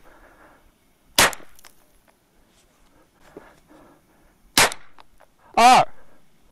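Two 9mm shots from a 16-inch Ruger PC Carbine, about three and a half seconds apart, each a sharp report that trails off briefly.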